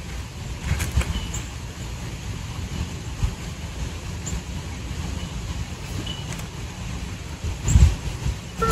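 Wind buffeting the microphone: a steady low rumble that rises and falls in gusts, with a stronger gust near the end.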